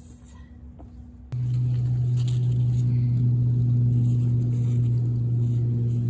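A machine running with a steady low drone that cuts in abruptly just over a second in and holds unchanged.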